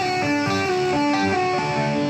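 Instrumental break in a country song: a guitar plays a quick run of single melodic notes over the backing band.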